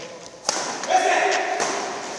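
A badminton racket hits the shuttlecock with a sharp crack about half a second in. About half a second later a player gives a loud, held shout.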